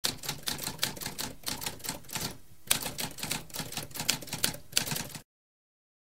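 Manual typewriter keys being struck in a quick run of sharp clicks, with a brief pause about halfway through, stopping a little after five seconds.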